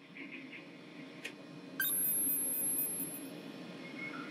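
Steady low hum of equipment inside a deep-sea submersible's crew sphere, with a single click about a second in. About two seconds in comes a quick run of very high-pitched electronic beeps, about four a second, lasting under two seconds over a steady high tone.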